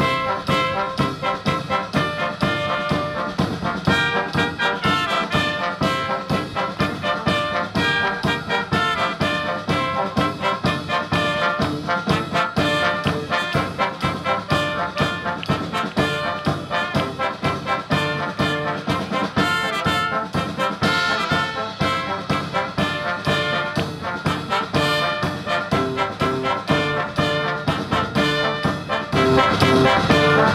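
Live brass band of trumpets, trombones and tuba with drums playing a tune together over a steady beat.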